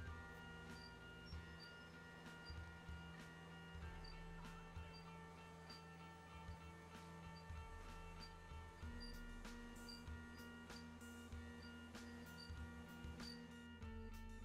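Faint background music: steady held notes over a light, regular beat.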